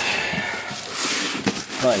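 Plastic mailer-bag packaging rustling and crinkling as a shoe box is handled, with a short knock about one and a half seconds in.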